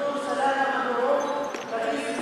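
A woman speaking Arabic, reading a speech at a lectern microphone.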